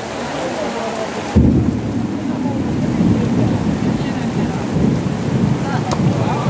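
Heavy rain falling steadily, then a rumble of thunder breaking in suddenly about a second and a half in and rolling on loudly through the rest.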